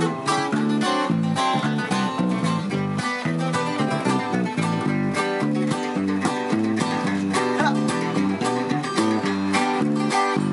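A twelve-string acoustic guitar, a six-string acoustic guitar and an electric bass playing together live: an instrumental passage of strummed and picked chords over a steady bass line.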